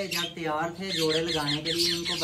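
Caged small parrots chattering: a rapid run of short, high squawks and chirps, thickest in the second half.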